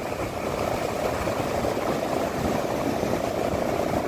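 An engine running steadily at idle, a constant hum with no change in pitch.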